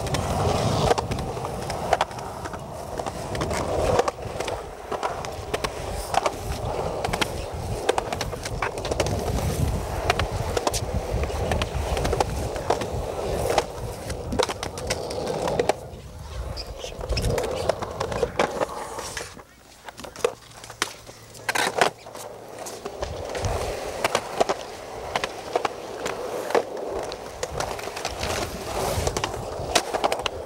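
Skateboard wheels rolling over concrete sidewalk in a continuous rumble, with frequent sharp clicks as the wheels cross pavement joints and cracks. The rumble drops off for a few seconds about two-thirds of the way through, then picks up again.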